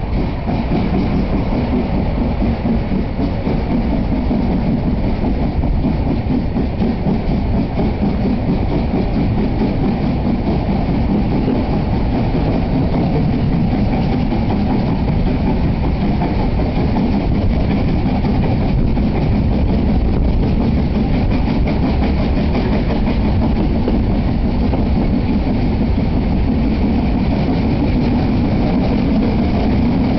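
Steam-hauled narrow-gauge passenger train heard from inside a moving carriage: a steady, loud rumble of the wheels on the rails.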